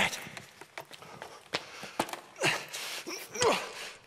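A few light footsteps and knocks as a man moves across a studio floor, with two short wordless vocal sounds from him about two and a half and three and a half seconds in.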